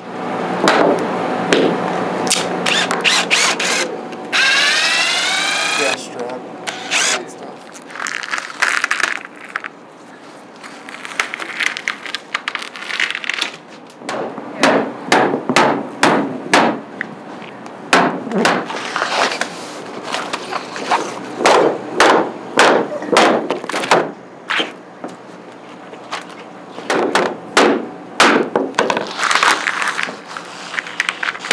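Dead-blow hammer striking a wooden board held against the form wall, knocking the form loose from a cured epoxy table top. Repeated sharp knocks come in quick clusters through the second half.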